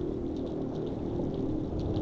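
Underwater ambience: a low, steady rumble with a faint held hum.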